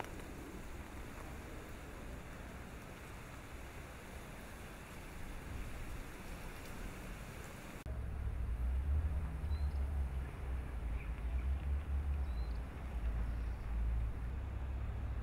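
Outdoor ambience: a steady faint hiss, then from about eight seconds in a louder, uneven low rumble that rises and falls, with a couple of faint high chirps.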